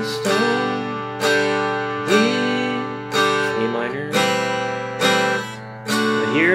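Acoustic guitar strummed, one chord about every second, each left to ring.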